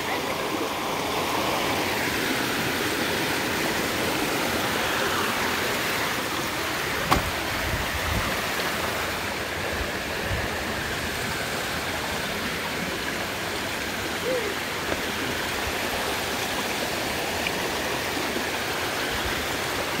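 Shallow creek water running over rocks, a steady rush, with one sharp knock about seven seconds in.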